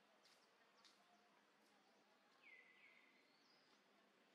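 Near silence: faint outdoor ambience with a few soft bird chirps, and a brief whistled bird call about two and a half seconds in that drops in pitch and then holds.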